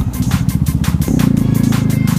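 Single-cylinder engine of a Bajaj Dominar 400 motorcycle running as it rides at low speed, a rapid steady pulsing from the exhaust that gets louder about a second in.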